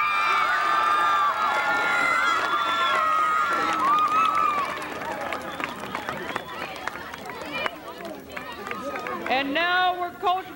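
A group of teenage girls shouting and cheering together, many high voices overlapping, for the first four seconds or so, then settling into scattered crowd chatter.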